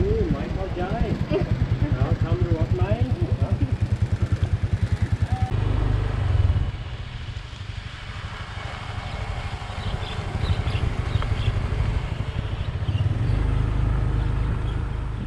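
Motor scooter engine idling close by with a steady fast throb, voices talking over it; about five and a half seconds in it cuts to riding, the engine running under a loud low rumble.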